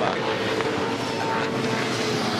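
V8 Supercar race cars' 5-litre V8 engines at race speed: several cars running close together, giving a steady engine note.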